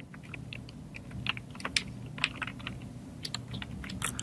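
Typing on a computer keyboard: a run of short, irregular key clicks over a faint low hum.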